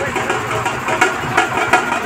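An engine running steadily, mixed with crowd noise.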